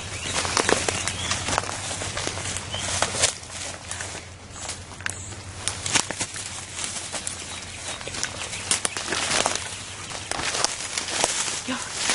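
Footsteps pushing through dense brush: leaves rustling and twigs snapping in irregular crackles as people walk through undergrowth.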